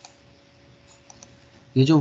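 A few faint computer mouse clicks over a faint steady hum, then a man starts speaking in Hindi near the end.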